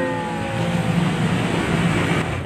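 Steady low rumble of road traffic, with a ringing tone that slides down in pitch and fades out within the first second.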